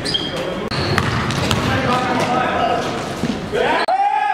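Basketball game sounds in a gym: a ball bouncing on the hardwood, short sneaker squeaks and players' voices calling out. A rising call near the end is held into a sustained shout.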